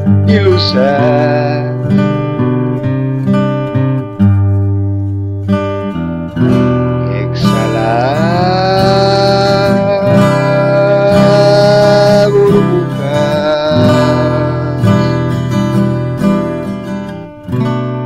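A trova song: strummed acoustic guitar chords with a voice sliding up into long held notes partway through.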